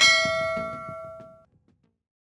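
A single bell-chime 'ding' sound effect for a notification bell, struck once and ringing out for about a second and a half as it fades. Quiet beats of background music fade out under it just before the end.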